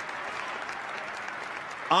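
Large audience applauding steadily, an even clatter of many hands clapping.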